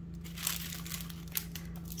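Plastic packaging crinkling as small bags of craft dies and charms are handled, a few short soft rustles over a faint steady hum.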